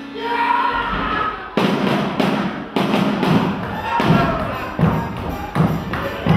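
Heavy stamps on a stage floor, about two a second, during a vigorous dance, with music and voices singing or shouting.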